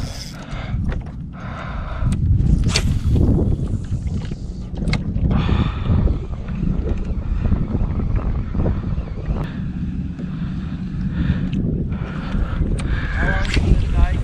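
Wind buffeting the microphone in a low, uneven rumble, with faint voices and a few small knocks.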